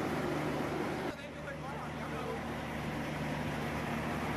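Steady low drone of drilling-rig machinery, dipping slightly and changing about a second in, with faint voices in the background.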